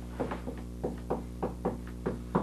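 Dry-erase marker writing on a whiteboard: a quick, uneven series of short taps and squeaks, roughly four a second, as the strokes of an equation go down. A steady low electrical hum runs underneath.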